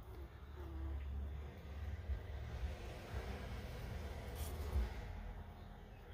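Faint low rumble and rustle of a handheld camera being moved, with a soft knock about five seconds in.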